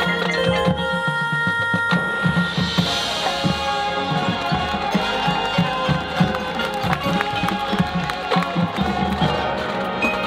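High school marching band playing its field show: winds and percussion together. A held chord gives way about two seconds in to busier playing, with a bright cymbal-like wash near three seconds and repeated drum hits after.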